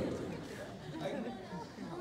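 Faint, indistinct speech and chatter, with no clear words.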